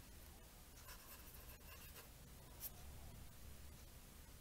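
Marker pen writing on paper: faint scratchy pen strokes, with one short, sharper stroke about two and a half seconds in.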